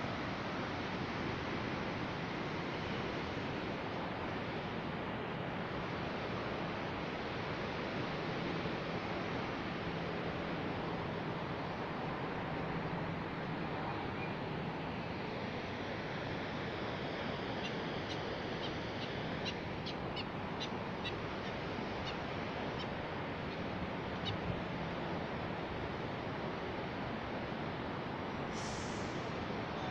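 Steady rushing noise of the Zambezi's whitewater in the gorge below the bridge, with a faint low hum coming and going and a few faint ticks about two-thirds of the way through.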